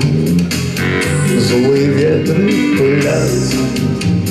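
Instrumental break in a live song: an acoustic guitar strummed in a steady rhythm, with an electronic keyboard carrying the melody.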